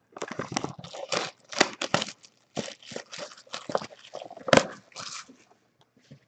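Cellophane shrink wrap being torn and crinkled off a trading-card hobby box: an irregular run of sharp crackles, with one louder knock about four and a half seconds in.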